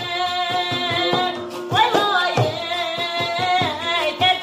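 Uyghur Dolan muqam: a woman sings long held notes with vibrato, her voice rising about two seconds in, while beating a dap frame drum in a steady pulse, accompanied by a plucked long-necked rawap lute.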